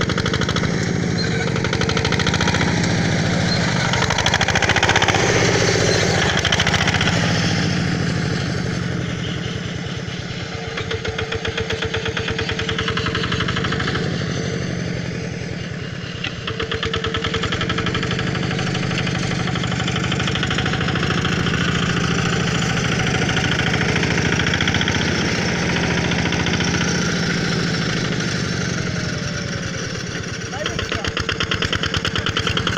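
Homemade tractor's engine running under way, a steady, rapid chugging. It fades as the tractor drives off around the middle and grows louder again as it comes back.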